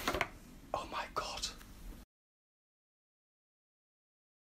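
A few short, soft rustles and taps from a hand handling a cardboard food box, which break off into dead silence about two seconds in.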